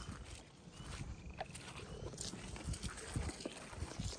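Footsteps on the ground of a field, with irregular thumps and knocks as the rifle and camera are carried along.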